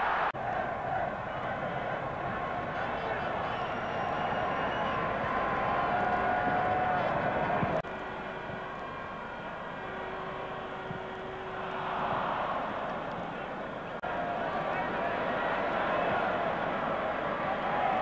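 Stadium crowd noise on an old television match broadcast: a steady din of many voices. It drops abruptly about eight seconds in and comes back up sharply at fourteen seconds, where the footage is cut.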